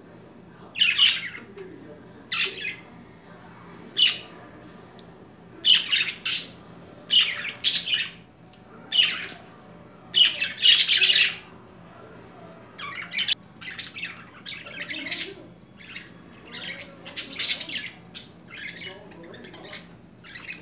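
Pet budgerigars chirping and squawking in short, scratchy bursts, about one every second or so with brief gaps between. The calls are loudest and longest a little past the middle.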